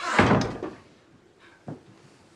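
A shed door shutting with a bang, then a small knock about a second and a half later.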